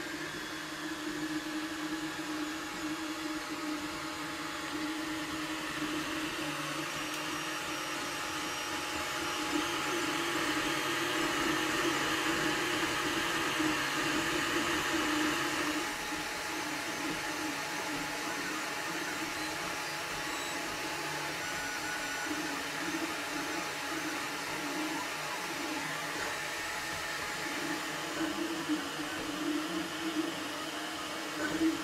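Anycubic i3 Mega FDM 3D printer running a print: a steady whir of its cooling fans, with the stepper motors humming and wavering in tone as the print head and bed move. It grows louder for several seconds, then drops back suddenly about halfway through.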